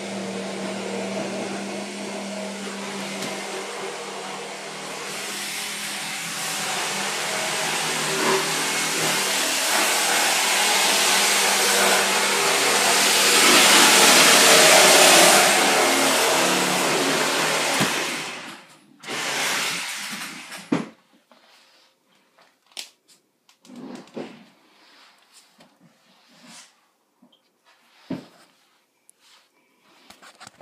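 Steady whirring of an electric motor with a low hum. It grows louder to a peak in the middle and cuts off suddenly about 18 seconds in, starts again briefly and stops, after which there are only a few light knocks and bumps.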